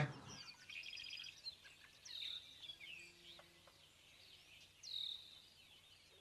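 Faint birdsong outdoors: a quick trill of chirps in the first second, and two louder calls that slide down in pitch, about two seconds in and again near five seconds.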